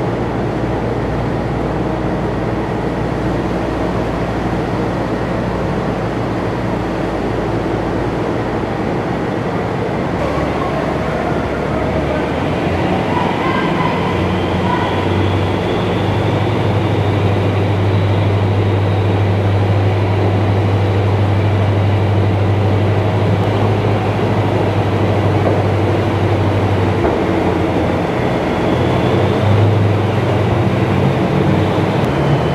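AAV-7A1 amphibious assault vehicle's diesel engine running under load as it drives out of the water and up onto the ship's well deck. It grows louder from about halfway through, with its steel tracks running over the deck.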